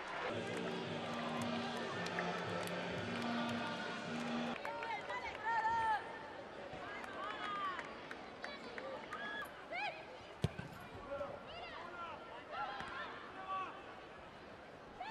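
Pitch-side sound of a women's football match: repeated short shouts from players calling to each other, and one sharp ball kick about ten and a half seconds in. For the first four seconds or so, low sustained notes play underneath.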